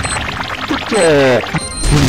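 Cartoon soundtrack: background music with sound effects, first a short run of rapid clicks, then a quick pitched sound falling steeply in pitch about a second in.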